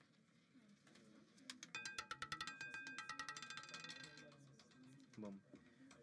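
Roulette ball clattering faintly across the frets and pockets of a spinning roulette wheel as it settles: a quick run of clicks with a ringing tone, fading out after about two and a half seconds.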